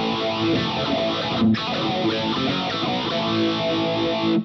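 Electric guitar played through a phaser pedal, the MayFly Audio Sketchy Zebra, set in front of a distorted amp preset, so the phase sweep itself is distorted. Notes and chords ring continuously, with a brief break about a second and a half in.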